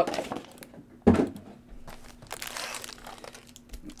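Foil trading-card pack wrappers crinkling as they are handled, with a sharp crackle about a second in followed by quieter, irregular rustling.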